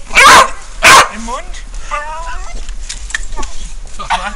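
A dog barking twice, loud and close, within the first second.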